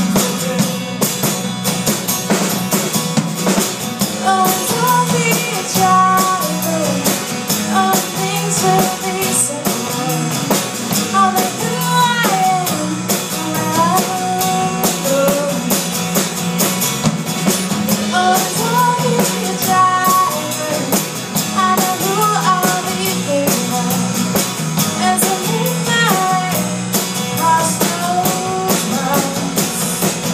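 A small live band plays a rock-tinged song: a strummed acoustic guitar, an electric bass and a drum kit keep a steady groove. A wavering vocal melody sits over them for most of the stretch.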